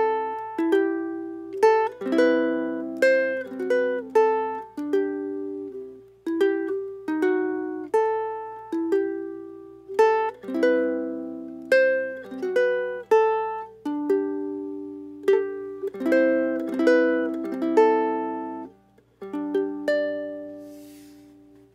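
Soprano pineapple ukulele of cherry wood, built by Fred Shields, played fingerstyle: a melody of plucked single notes mixed with chords, each note starting sharply and dying away. The playing pauses briefly near the end before one last plucked note.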